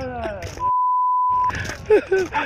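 A single steady beep, about a second long, cutting in over voices a little after the start. It is a broadcast censor bleep masking a word in the amateur footage's soundtrack.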